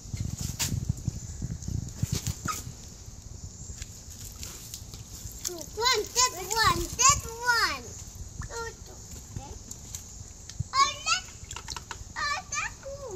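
A toddler's high-pitched voice in wordless, sing-song calls with rising and falling pitch, mostly around six to eight seconds in and briefly again near the end. Low rumbling knocks sound in the first two seconds.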